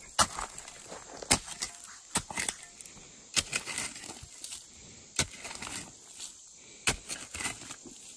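A short-handled hand digging tool chopping into packed dirt and clay: about seven sharp strikes at uneven intervals.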